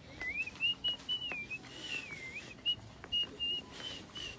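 A person whistling a tune: one clear note sliding up and dipping down between short held notes, with brief breaks between phrases.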